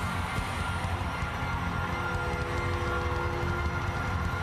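Church music over the steady noise of a large congregation, with held chords coming in about two seconds in.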